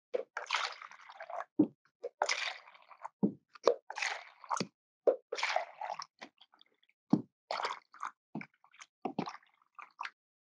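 Water poured from a pitcher into clear plastic cups one after another, four short pours of about a second each. Short knocks and taps come between and after them.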